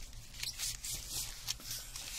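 Plastic die-set packaging rustling and crinkling as it is handled and worked open, with a light click about a second and a half in.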